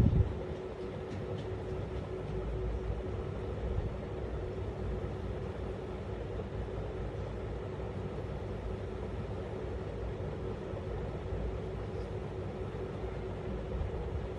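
Steady low rumble with a constant hum, as from a running machine, and a brief thump at the very start.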